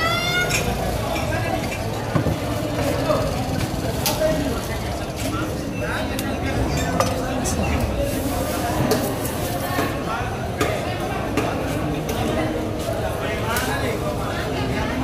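Background voices over a low rumble, with a few scattered sharp knocks and clinks from a steel knife on a wooden chopping block as tuna is cut.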